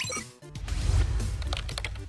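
Quick keyboard typing sound effect over background music, with a low rumble setting in about half a second in.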